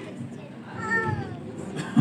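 Low murmur of a hall, with one short high-pitched call that falls in pitch about a second in.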